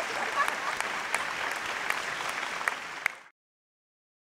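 Audience applauding, a steady patter of clapping with a few sharper individual claps standing out; it cuts off abruptly a little over three seconds in.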